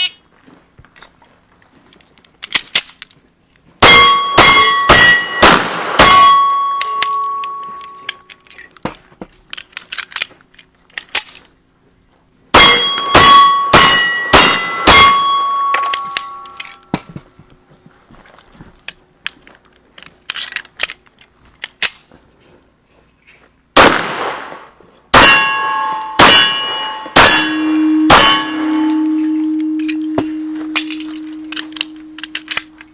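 A 1911 pistol firing .45 ACP in three quick strings of five or six shots, about half a second apart, with pauses between them. Steel targets ring after the hits. A steady low tone sounds near the end.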